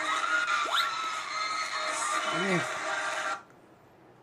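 A concert crowd screaming in long, high-pitched shrieks, one of them sweeping sharply upward, with a short lower voice sound about two and a half seconds in. It cuts off suddenly about three and a half seconds in.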